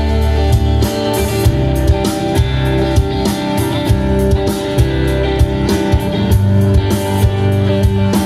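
A small rock band playing live: electric guitars and bass over a drum kit, a steady full-band passage with regular drum hits.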